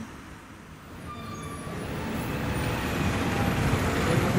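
Street traffic noise, vehicle engines and road rumble, fading in and growing steadily louder from about a second in.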